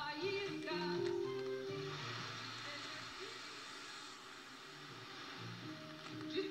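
Brazilian pop song with a singing voice, received on medium-wave AM and heard through a portable shortwave receiver's speaker. The singing gives way to a noisier, less tuneful stretch about two seconds in, which dips in level before the music picks up again near the end.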